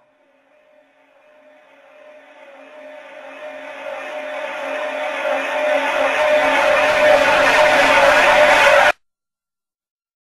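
Closing swell at the end of a hard-rock track: a rushing wash of noise over a steady low drone, growing from faint to loud over about eight seconds, then cutting off abruptly a second before the end.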